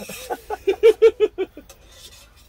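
A man laughing out loud in a quick run of about seven short "ha" bursts, loudest about a second in.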